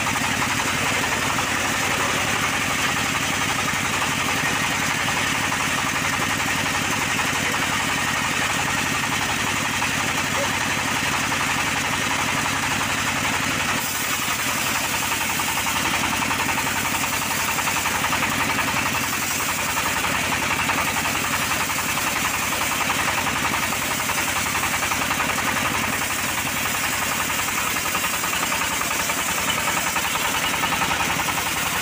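Homemade band sawmill sawing through a teak log: the band blade cutting steadily while the engine driving the mill runs at an even speed throughout.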